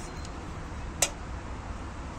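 Low, steady outdoor background noise with a single sharp click about a second in.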